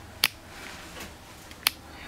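Two sharp clicks about a second and a half apart, over a faint low hum.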